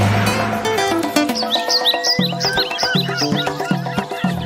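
Commercial background music: a falling run of notes, then low bass notes pulsing about twice a second, with a burst of high chirping glides over the top near the middle.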